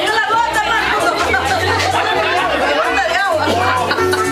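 Dance music with a pulsing bass line playing at a party, under a crowd of people talking at once.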